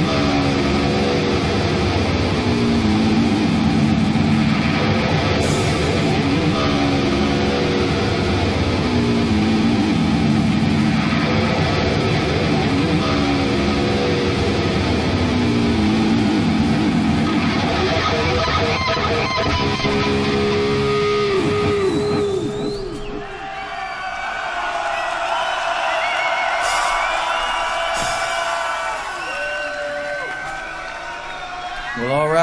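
A heavy rock band playing live: distorted electric guitar riff with bass and drums, a falling guitar slide coming back every three or four seconds. About 22 seconds in the full band drops away, leaving thinner sound with sliding high guitar notes.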